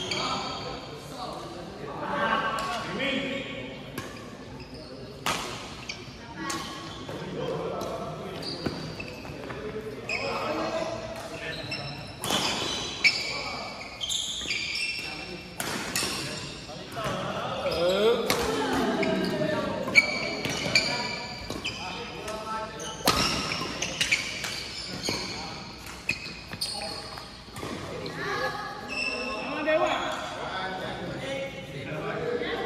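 Badminton rackets striking a shuttlecock with sharp cracks at irregular intervals during rallies, mixed with shoes squeaking on the court floor, echoing in a large sports hall.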